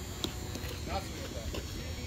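Distant, indistinct voices of people on a ball field over a steady low rumble, with one short, sharp knock about a quarter second in.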